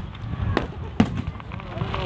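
Aerial firework shells bursting overhead: three sharp bangs in the first second, about half a second apart.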